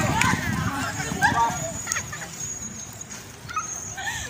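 Short shouts and cries of several people running off, growing fainter as they move away, with scuffling footfalls on grass in the first couple of seconds.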